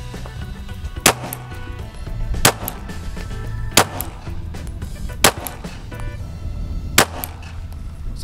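Five single shots from an FN 509 Tactical 9mm pistol, fired slowly at about one every one and a half seconds, with music playing underneath.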